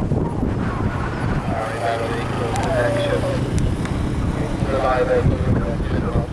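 Wind buffeting the microphone with a heavy rumble, and people's voices talking indistinctly in short stretches during the middle and near the end.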